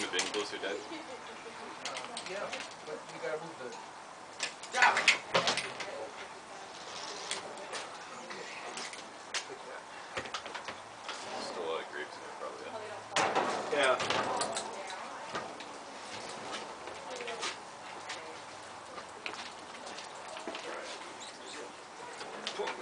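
Background chatter of several people, with occasional knocks and clatter of equipment being handled. The knocks are loudest about five seconds in and again around thirteen to fourteen seconds.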